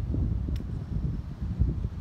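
Wind buffeting the microphone, a rough low rumble that rises and falls, with one faint click about half a second in.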